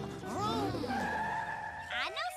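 Remix music built from chopped cartoon voice samples over a bass line, ending in a steady held high tone for about the last second.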